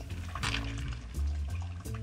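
Mandarin juice trickling from a handheld citrus press into a glass, under soft background music with held notes.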